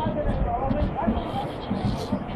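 Dull thuds of a football being kicked and juggled, with indistinct voices and faint music around it.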